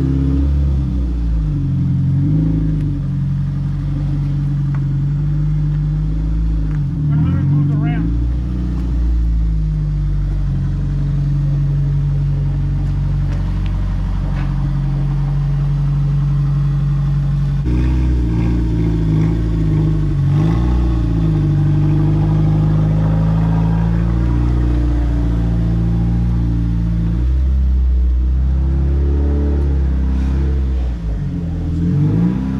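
Toyota 2ZZ-GE inline-four engine of an MR2 Spyder running at low revs while the car is driven slowly, its pitch dipping and rising briefly a few times.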